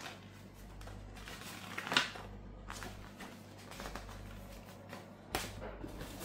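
Pages of a paper user manual being leafed through and rustling, with one sharp paper snap about two seconds in. A short knock follows near the end as the cardboard box is handled.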